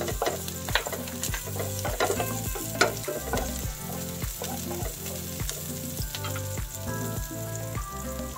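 Chopped onion and garlic sizzling in olive oil in a nonstick frying pan while a wooden spatula stirs them, scraping and tapping the pan with frequent sharp clicks.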